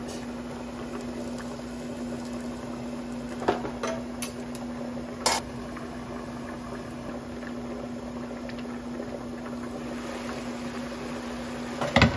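Braised chicken, potatoes and carrots simmering in a covered wok: a steady bubbling under the glass lid, with a few short clicks in the middle and a steady low hum underneath.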